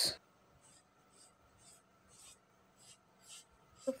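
Tailor's chalk marking fabric on a table: faint, short scratching strokes, about two a second.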